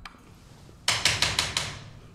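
Fist knocking on a wooden front door: a quick run of about five raps starting about a second in.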